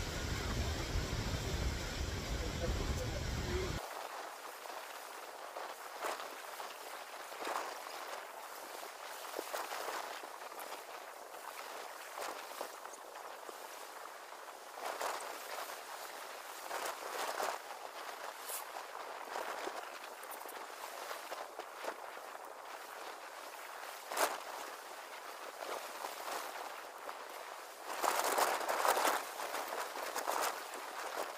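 Wind buffeting the phone's microphone with a low rumble for the first few seconds, then footsteps and rustling through cut leafy branches on the ground, with scattered sharp clicks and crackles. Near the end the rustling of branches grows louder.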